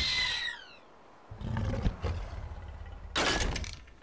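Cartoon creature roar sound effects: a pitched roar falling in pitch right at the start, then a low rumble, and a second loud roar-like burst near the end.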